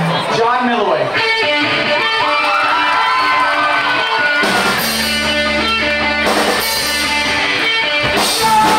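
Electric guitar played through a stage amp, with held and bending notes, and a bass guitar's low note coming in about halfway through.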